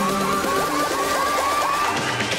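Electronic dance music from a DJ mix: a repeating synth melody plays with the bass cut out, while a rising sweep climbs steadily in pitch through the whole stretch.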